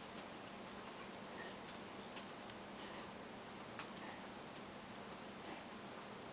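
A few faint, irregular light clicks and taps of small makeup containers and tools being handled, over a steady low hiss and hum.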